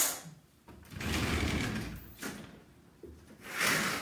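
Noises of someone moving about and handling things in a small room: a sharp knock or scrape at the start, a rough scraping stretch from about one to two seconds in, and another scrape near the end.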